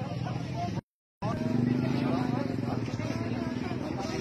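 Onlookers' voices talking, cut by a sudden half-second dropout about a second in; after it a vehicle engine runs steadily close by under the voices.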